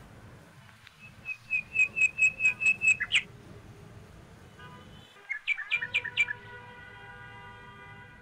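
A bird calling: a fast run of about eight sharp, high repeated notes, then a shorter burst of notes about two seconds later, over a low steady rumble.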